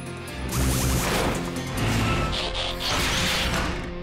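Action score of a cartoon soundtrack with noisy sound effects laid over it: a dense rush begins about half a second in, with crashing and whooshing effects over the music.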